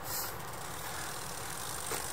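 A steady low rumble of outdoor background noise, with a short hiss just after the start.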